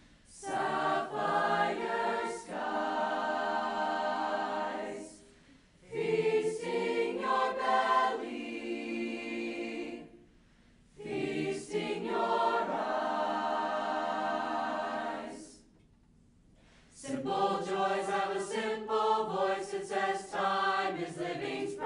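Mixed choir singing in phrases of about four to five seconds, each separated by a short pause.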